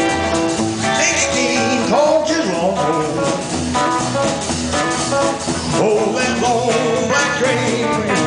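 Live rockabilly band playing an instrumental passage: drum kit, upright bass and acoustic rhythm guitar under an electric guitar lead with bent notes.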